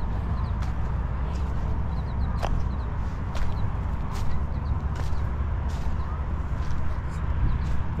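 Wind rumbling steadily on the microphone, with irregular crunching footsteps on dry seaweed and rocky ground. A few faint, high, short chirps sound now and then.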